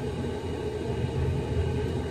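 Steady low engine rumble heard from inside a pickup truck's cab.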